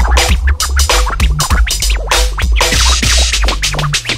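Drum and bass DJ mix: fast breakbeat drums over a deep sub-bass line, with short vinyl scratches cut in over the top. A bright hiss swells in about two-thirds of the way through.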